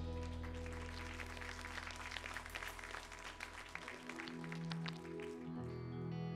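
Congregation applauding as a worship band's held final chord fades away; the clapping dies down after about five seconds, as soft new music begins.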